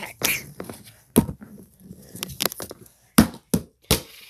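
A string of sharp, irregularly spaced knocks and clacks, about seven in four seconds with handling rustle between them, as a DVD disc is struck and handled in an attempt to break it.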